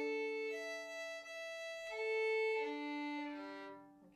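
Violin bowed in one slurred stroke across its open strings: A, up to E about half a second in, back to A near two seconds, then down to D, fading at the end. There is a brief break in the tone as the bow leaves the E string. This is the little jump that the curve of the bridge causes when the crossing is jerked rather than kept smooth.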